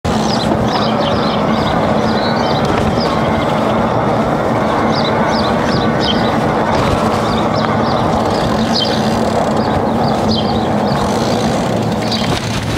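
Steady wind and tyre noise from riding an electric bike along asphalt, with a low steady hum underneath. Short high chirps of birds come and go throughout.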